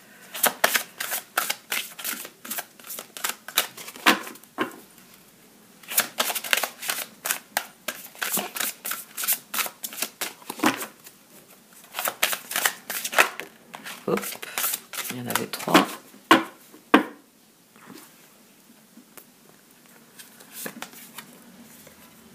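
A large gilt-edged Oracle de Kuan Yin oracle card deck being shuffled by hand, in quick runs of card flicks and slaps. The shuffling eases off over the last few seconds.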